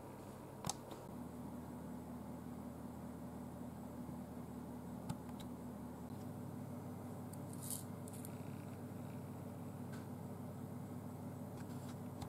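Faint steady low hum, with a few soft clicks and a short hiss about two thirds of the way through.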